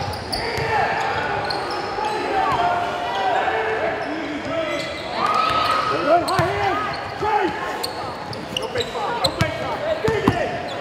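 Live gym sound of a basketball scrimmage: a ball dribbling on the hardwood court, sneakers squeaking, and players calling out, with the echo of a large gym.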